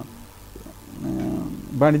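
A man's voice pausing briefly, then making a drawn-out hesitation sound before speech resumes near the end.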